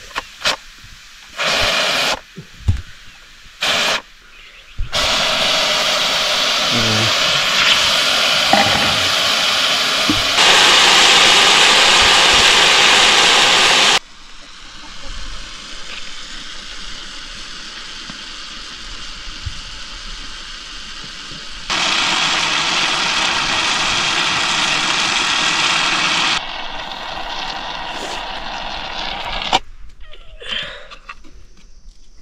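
Pressure cooker venting steam through its lifted weight valve: a loud, steady hiss in long stretches that start and stop abruptly, loudest in the middle, with a few short clicks from the valve early on.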